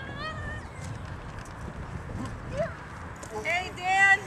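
Voices over steady low outdoor background noise: a faint high-pitched voice at the start, then louder high-pitched calling voices near the end.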